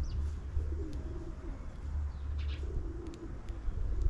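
A dove cooing twice, low and wavering, with a few short high chirps from small birds and a steady low background rumble.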